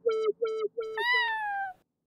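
End of an electronic dubstep track: a short pitched note repeated about three times a second. Then, about a second in, a single cat meow falling in pitch, which cuts off shortly before the end.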